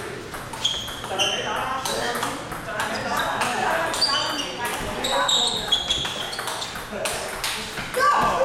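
Table tennis rally: the celluloid ball clicks sharply off paddles and table about once or twice a second, each hit with a short high ping, over a murmur of voices in a large hall.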